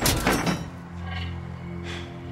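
Film sound effect of a metal crash, debris clattering and ringing out over the first half second, then the film score's sustained low notes with a few faint clicks.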